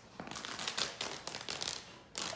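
Blanket fabric being torn by a Great Dane pulling it with its teeth: a quick run of short, sharp rips starting a moment in.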